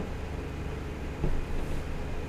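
Room tone in a lecture hall: a steady low hum with hiss, and one short, faint sound a little over a second in.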